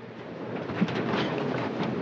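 Steady rushing noise that builds over the first second, with faint voices murmuring beneath it.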